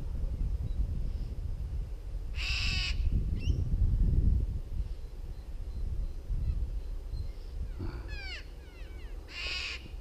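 A crow cawing twice, each a short harsh call, with a small bird's quick falling notes about eight seconds in, over a steady low rumble.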